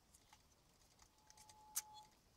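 Near silence with a few faint clicks of hands handling a tinplate toy helicopter while feeling underneath for its switch, and a sharper click near the end. A faint steady high tone runs through the last second. The battery-operated toy does not start.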